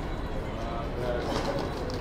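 Chicago street ambience: a steady low rumble of city traffic, with a pigeon cooing in the middle.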